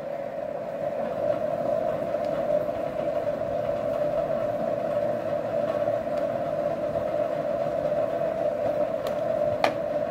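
A steady hum with one constant mid-pitched tone over a background hiss, and a single sharp click near the end.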